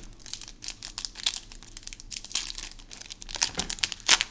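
Foil wrapper of a Yu-Gi-Oh trading card booster pack crinkling and tearing as it is pulled open by hand, a continuous run of irregular crackles.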